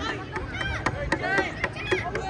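Many children's high voices shouting and calling out over one another, with a few sharp knocks among them.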